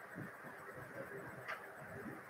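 Faint steady room hiss with scattered soft low knocks and one sharp click about one and a half seconds in.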